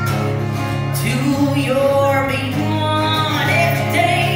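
A live acoustic country song: acoustic guitar with a woman singing the melody.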